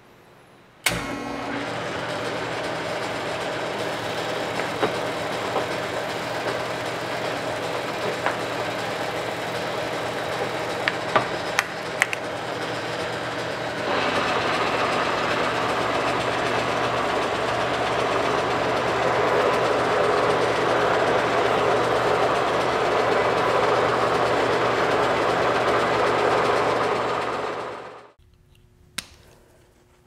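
Kearney & Trecker horizontal milling machine switched on and running steadily. About halfway through it grows louder and noisier, then it is switched off and winds down to a stop shortly before the end.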